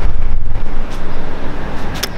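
Loud, low rumble of wind buffeting a handheld camera's microphone.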